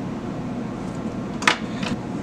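Steady low room hum, with a sharp click about one and a half seconds in and a fainter one just after, as a pen and metal calipers are handled on a wooden workbench.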